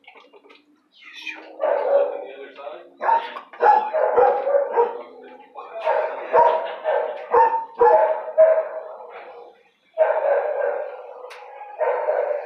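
A dog barking over and over in bursts, starting a second or two in, with a brief pause near the end.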